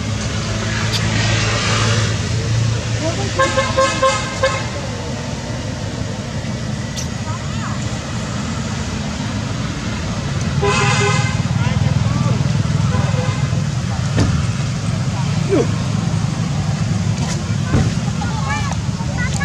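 Motor traffic running with a steady low rumble, and a vehicle horn sounding twice: about three and a half seconds in, and again about ten and a half seconds in.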